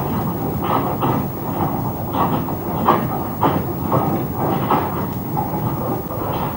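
Rail-recovery train on a narrow-gauge line moving off and dragging its wedge sled to rip the rails from the sleepers: a steady rumble with irregular clanks and knocks, one or two a second.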